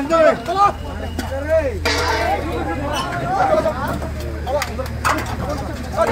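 Several people talking and calling out over one another, with a steady low hum underneath and a few short clicks.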